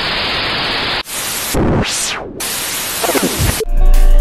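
Static hiss sound effect that cuts off about a second in, followed by whooshing noise sweeps that fall and rise. Music comes in near the end.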